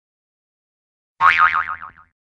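Cartoon 'boing' sound effect: a sudden springy twang about a second in, its pitch wobbling quickly up and down as it fades out in under a second.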